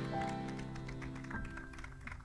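The final held chord of a small acoustic ensemble (accordion, keyboard, violin, guitar) fading away, the sustained notes dying out about two thirds of the way through. A few faint scattered clicks follow.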